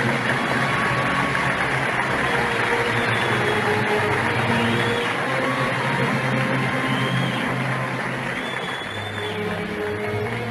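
Arabic orchestral music from an old live concert recording: strings and other instruments holding long notes under a dense, steady wash of noise.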